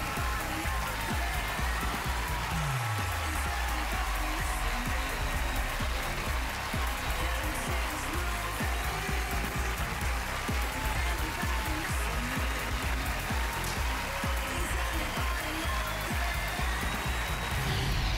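Show music over a studio audience applauding and cheering, with a deep tone sliding downward about two and a half seconds in.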